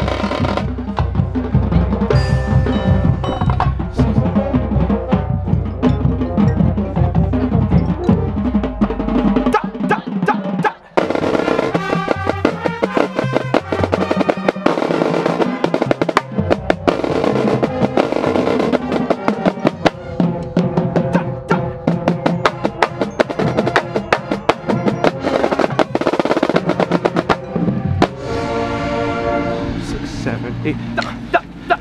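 Marching snare drum played close up with the rest of the drumline, including tenor drums, in fast stick patterns and rolls. There is a short break about eleven seconds in before the playing resumes.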